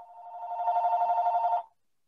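A telephone ringing: a two-tone warbling ring that grows louder over the first half second or so and stops about a second and a half in.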